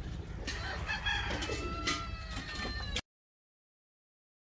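A rooster crowing: one long call starting about a second in, over a steady low hum. The sound cuts out completely near the end.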